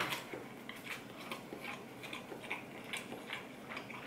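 A person chewing a mouthful of soft, chewy gnocchi close to the microphone: quiet, irregular small wet mouth clicks, a few each second.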